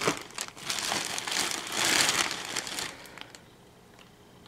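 Plastic and fabric bags rustling and crinkling as a tub of protein powder is pulled out of them, loudest around the middle and dying away about three seconds in.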